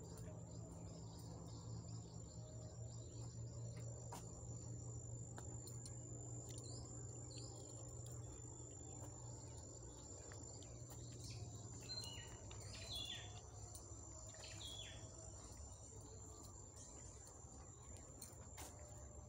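Insects keep up a steady, faint, high-pitched trill, with a few short bird chirps in the second half and a low steady rumble underneath.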